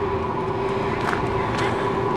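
Steady background hum holding a constant pitch, with one or two faint taps.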